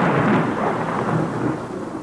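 A deep, thunder-like rumble from a title-sequence sound effect, fading away steadily over about two seconds.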